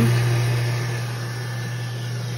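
Electric booster pump of a DIY reverse-osmosis system running steadily, pushing maple sap through the membrane at about 150 PSI: a constant low hum.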